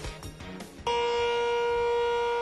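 The closing notes of a TV news intro jingle, then, about a second in, a multi-horn outdoor tornado warning siren cuts in suddenly on a single steady tone.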